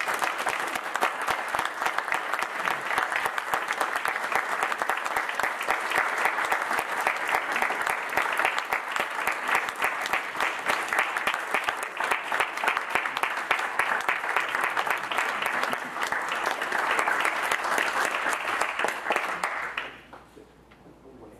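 Audience applauding steadily for about twenty seconds, then stopping abruptly at the very end.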